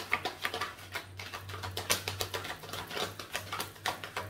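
A tarot deck being shuffled by hand: a quick, irregular run of card clicks and flicks.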